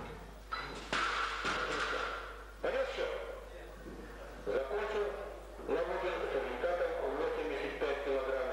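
Men talking in the hall. About a second in come sharp knocks that fit a loaded barbell being dropped onto the platform after the lift.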